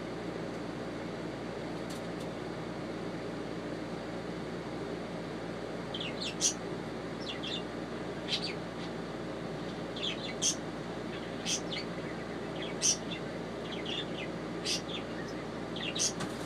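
A bird giving short, high-pitched chirps, singly or in quick twos and threes, every second or two from about six seconds in, over a steady background hum.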